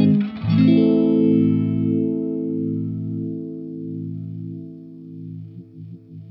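Electric guitar played through a Black Cat Vibe, a Univibe-style modulation pedal: a chord is struck about half a second in and left to ring, fading slowly with the pedal's slow throbbing pulse. Near the end the pulse quickens as the Speed knob is turned up.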